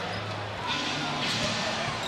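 Basketball arena crowd noise, with a ball being dribbled on the hardwood court.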